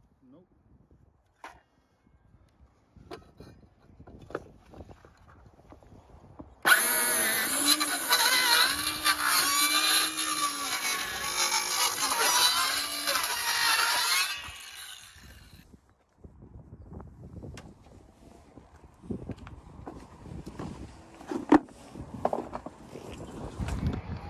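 Ryobi cordless circular saw cutting a corrugated bitumen roofing sheet for about eight seconds, its motor pitch wavering under load, then winding down, its blade gumming up with tar from the bitumen. Light knocks and handling sounds before and after the cut.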